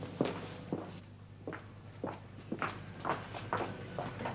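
Footsteps on a hard surface: a series of uneven, separate steps.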